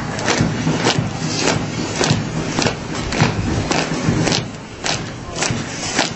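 Shoes of a column of marchers striking the asphalt in step, an even beat of a little under two steps a second, over a steady street din.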